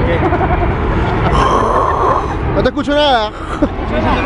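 Outdoor ambience beside a football pitch: a steady low rumble, with a voice calling out loudly about three seconds in.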